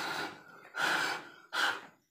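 A person breathing hard: three loud, gasping breaths less than a second apart, the last one short.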